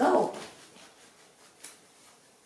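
A young macaque gives one short squeal, loudest right at the start and fading within half a second. A light tap follows about one and a half seconds in.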